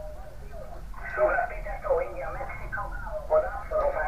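A voice from an HF radio receiver's speaker: faint hiss for about a second, then a station's speech comes in, thin and telephone-like, as the magnetic loop antenna's tuning capacitor is turned towards resonance.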